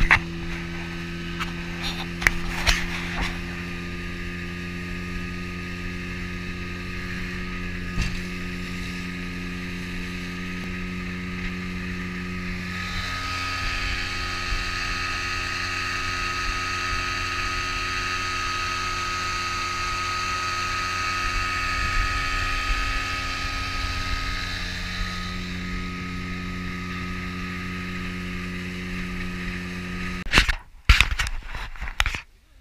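Evinrude outboard motor running steadily at cruising speed, driving the fishing boat across open water, with wind and water rush over the microphone. For about twelve seconds in the middle, the rush of the wake and a high whine are louder. There are a few knocks near the start.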